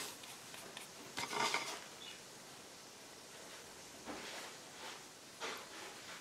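Quiet room with faint hiss and a few soft, brief rustles of handling, about a second in, around four seconds and again near the end, as the painter works with her brush and the piece.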